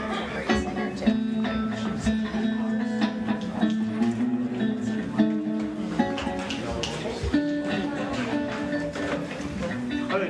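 Guitar music: strummed chords that change about once a second, at a steady moderate level.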